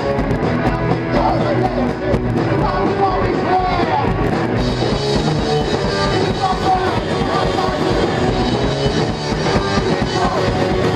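Live punk rock band playing loud and continuous, heard close up.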